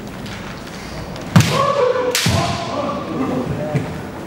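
Kendo exchange: two sharp cracks less than a second apart from bamboo shinai striking and feet stamping on a wooden floor, the first the loudest, with a fighter's long kiai shout carrying through and after them.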